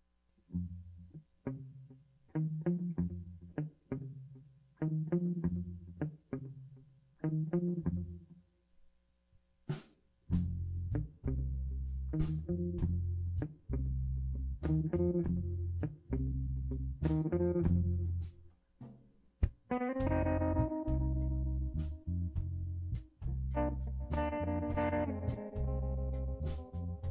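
A live electric blues-funk trio starts a song on electric guitar, bass guitar and drums. For about ten seconds a lone riff of separate low notes plays. Then the drums and bass come in with the full band. Near the end the electric guitar adds longer, higher held notes over the groove.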